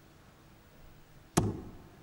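A single steel-tip dart striking a bristle dartboard: one sharp thud about one and a half seconds in.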